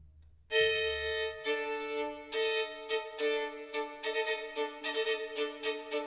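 Soundtrack music: a violin comes in suddenly about half a second in and plays a run of short, repeated notes.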